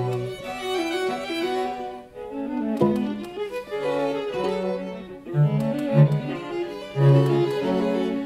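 String octet of violins, violas and two cellos playing classical chamber music, many bowed notes moving at once. A sharp accented chord comes about three seconds in, and short, loud low-string notes stand out in the second half.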